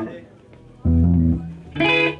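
Bass guitar playing a single low note about a second in, stopped after about half a second, in a pause between songs; a short loud pitched sound follows near the end.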